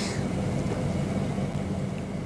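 Steady background hum and hiss with no clear events.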